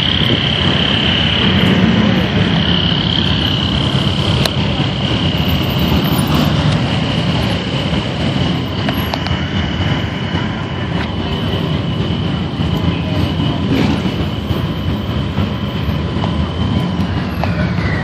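Steady engine and road rumble of slow-moving parade vehicles, with a thin steady high whine over it that slides down in pitch near the end.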